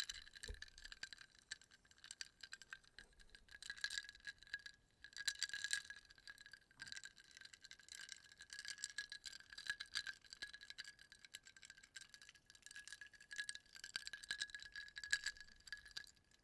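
Ice cubes rattling and clinking against the inside of a frosted glass mug of water as the mug is swirled close to the microphone, in repeated swells of fine, crisp clinks.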